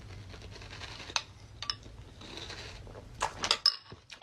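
A metal spoon clinking against a ceramic bowl while someone eats: a few scattered sharp clicks, a short hiss about halfway through, and a louder cluster of sounds near the end.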